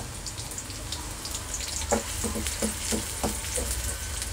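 Chopped onion and garlic sizzling in hot oil in an aluminium kadhai, a steady crackling hiss as the onions sauté. About halfway through, a spoon stirring them knocks against the pan several times in quick succession.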